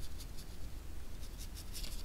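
Small pointed watercolour brush stroking and dabbing on textured watercolour paper: a quick, irregular series of faint, soft scratchy strokes.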